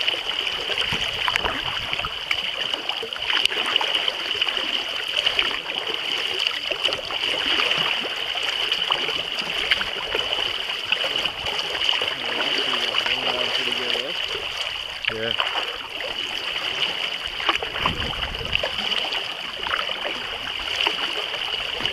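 Choppy water lapping and splashing against the hull of a 10-foot kayak as it is paddled across open water, with frequent small splashes over a steady high hiss.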